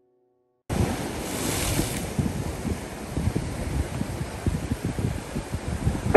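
Ocean surf washing over coastal rocks, with wind buffeting the microphone; it starts abruptly about a second in.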